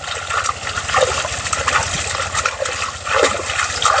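Hands washing in shallow river water: irregular, quick splashing and sloshing close by.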